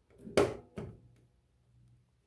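Two short scrapes of steel divider points against sheet metal, about half a second apart, as the dividers are set at the sheet's edge to mark a measurement.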